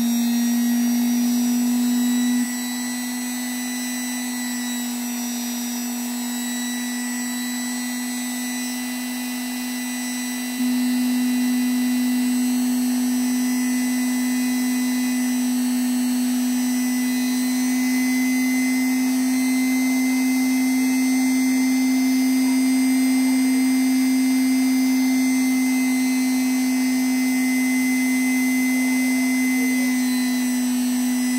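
Electric rotary tool (rated to 38,000 rpm) running free with a small mounted abrasive point, turning at about 14,000–15,000 rpm on a low speed setting: a steady motor whine with a fainter high whine, a little quieter for several seconds early on.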